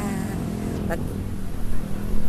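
Steady low drone of road traffic, with a woman's brief words at the start and about a second in.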